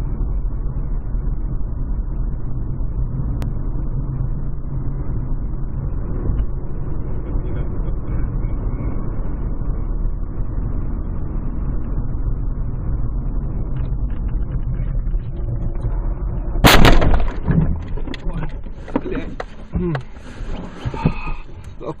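Steady low engine and road rumble heard from inside a moving car, then about seventeen seconds in a single loud crash as the car collides with an oncoming car and the windshield shatters. After the impact come scattered rattles and knocks and a person's voice.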